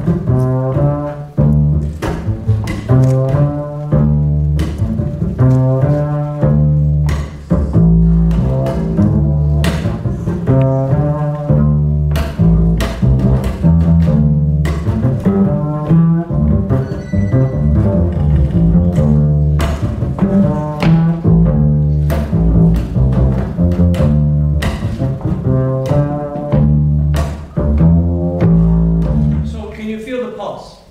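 Acoustic upright double bass played pizzicato, unaccompanied: a steady groove of plucked low notes, each note starting with a sharp finger click, stopping right at the end. It is a demonstration of holding a one- or two-bar bass pattern so that it keeps feeling good.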